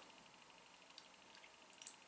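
Near silence: room tone, with a few faint small clicks, one about a second in and a short cluster near the end.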